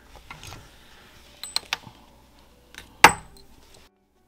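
Handling noise from metal knitting needles and chunky yarn: a few light clicks, then one sharper knock about three seconds in.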